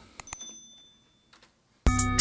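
A couple of soft mouse-like clicks, then a short, high bell-like notification chime that rings for about a second and fades: the sound effect of an animated subscribe-and-bell button. Just before the end, a hip-hop track with rapped vocals starts playing loudly, here with its vocal EQ bypassed.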